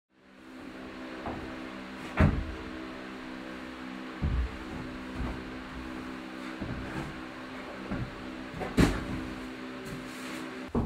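A climber moving on a steep home bouldering board: scattered knocks and thuds of hands and feet on the holds and plywood wall, with two loud thumps, one about two seconds in and one near the end as he comes off the wall. A steady hum runs underneath.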